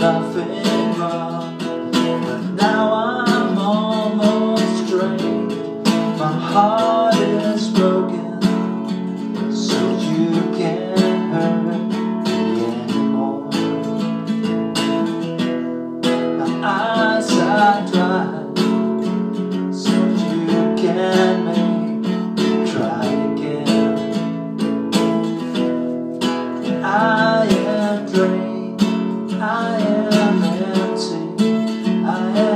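Acoustic guitar strummed and picked in a steady song accompaniment, with a man's voice singing in short phrases over it now and then.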